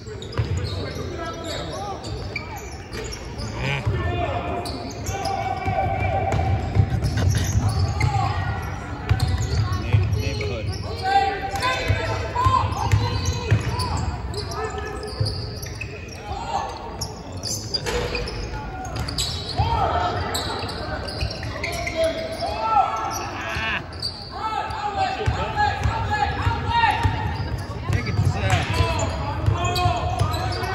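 Basketball game sounds in a large gymnasium: a basketball bouncing on the hardwood court and sneakers squeaking in short, curling chirps, over indistinct voices of players and spectators.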